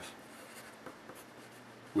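A pencil writing on paper: faint scratching strokes.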